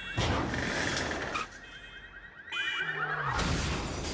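A Lexus sedan going over the edge of a rooftop parking deck and crashing, as film sound effects: a loud crash just after the start, a quieter stretch, then a second loud crash about two and a half seconds in as the car lands upside down.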